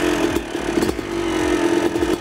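Yamaha YZ250 two-stroke dirt bike engine running steadily as it warms up, its pitch dipping slightly about a second in and then picking back up.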